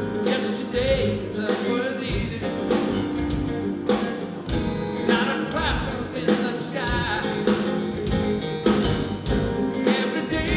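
Live band playing the opening of a mid-tempo song, with drums on a steady beat of about two strokes a second under organ and other sustained instruments.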